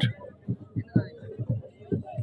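A large bully kutta (Pakistani mastiff) panting in short, low pulses, about three a second.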